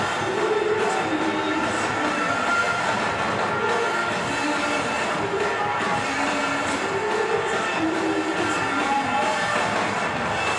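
Live rock music from an electric guitar and a drum kit played together, loud and dense, with a guitar figure repeating every few seconds over steady drumming.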